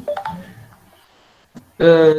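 A man's voice in short broken fragments, with a brief electronic beep shortly after the start and a quiet gap in the middle.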